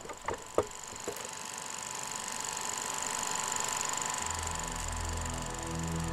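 Wooden charkha (spinning wheel) turned by hand, knocking a few times in the first second, followed by a steady mechanical whir that swells slightly. Low background music comes in about four seconds in.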